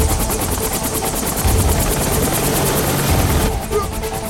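Film action soundtrack: a fast, steady chopping drone under music with deep drum hits about every second and a half, and a rushing noise that swells through the middle and cuts off sharply about three and a half seconds in.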